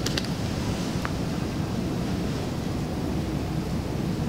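Steady low rumbling noise with a hiss over it, broken by a few faint clicks in the first second or so.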